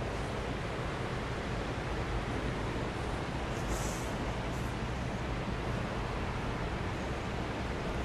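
Steady background noise with a low rumble and no speech: room tone during a silent pause. A brief, higher hiss comes about four seconds in.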